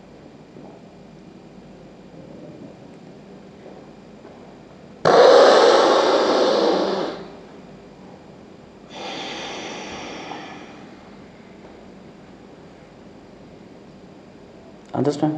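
A forceful exhalation through one nostril after a long held breath: a sudden loud rush of air lasting about two seconds and tailing off. About two seconds later comes a second, quieter nasal breath.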